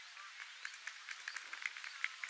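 Scattered light applause from a few spectators: irregular single claps, starting about half a second in and growing a little denser.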